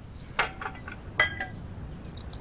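Dishes and cutlery clinking at a dining table as food is served: a few light clinks of china and glass, two of them close together past the middle.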